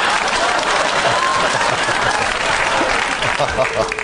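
Studio audience applauding after a joke, a dense steady clapping that dies away near the end.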